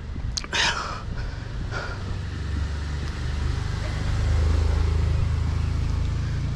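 A car engine running with a low, steady rumble. It grows louder over a few seconds, is loudest about four to five seconds in, then eases slightly.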